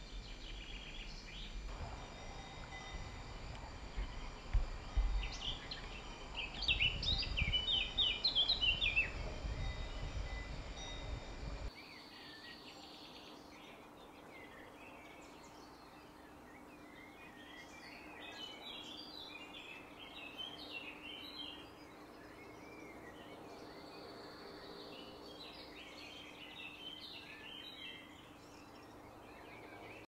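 Small birds chirping and singing outdoors, over a low rumble for the first twelve seconds or so. About twelve seconds in the sound cuts abruptly to quieter birdsong that goes on in short chirping phrases.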